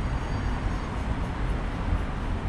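Steady rushing noise of a bicycle ride along a concrete sidewalk: wind on the microphone and the tyres rolling, heaviest in the low rumble.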